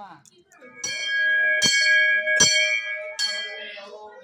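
A puja bell struck four times, about one strike every 0.8 seconds, each ring carrying on into the next and fading near the end.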